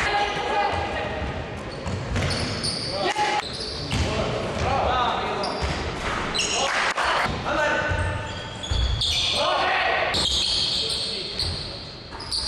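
Indoor basketball game in a gymnasium: players shout and call to each other, sneakers squeak on the wooden floor in short high squeals, and a basketball thuds as it is dribbled, all echoing in the large hall.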